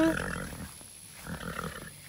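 Horse nickering low, a rough rumble in two short spells, the first just after the start and the second in the middle.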